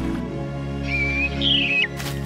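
Orchestral film score with steady held notes, over which a cartoon bird gives two short whistled chirps about a second in. The second chirp is higher and ends in a quick downward slide.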